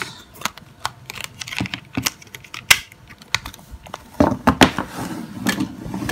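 Irregular small plastic clicks and taps from handling an old Nokia mobile phone, its removed back cover and its battery, with the battery set down on a wooden table.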